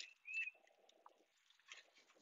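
A bird chirping twice, short and quick, in the first half second, then near quiet with a few faint clicks.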